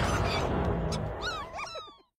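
Cartoon slug creatures chattering in a quick run of high, bending squeaks and chirps in the last second, fading out. Before them, the low end of the music bed dies away.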